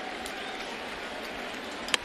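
Steady stadium crowd murmur, then near the end a single sharp knock of a baseball bat meeting the pitch. It is weak contact that sends the ball off as a soft tapper.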